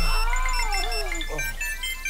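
A woman's drawn-out moans, each rising and falling in pitch, over music with short high chiming notes and a low steady bass note; everything grows gradually quieter.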